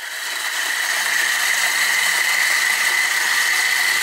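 Electric coffee grinder running, grinding beans: a steady motor noise with a high whine, swelling up over the first second and then holding even.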